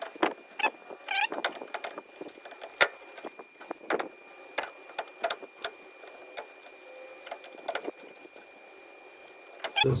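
Irregular light clicks and taps of clear plastic bleeder tubes and fittings being handled and pushed into place on a master cylinder's reservoir, as it is set up for bench bleeding.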